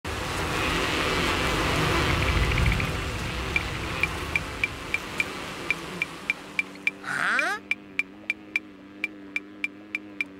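Cartoon soundtrack: a dense buzzing from a swarm of cartoon jellyfish that fades over the first three seconds, then a light tick about three times a second. A quick rising swoop comes about seven seconds in, followed by a steady low hum under the ticks.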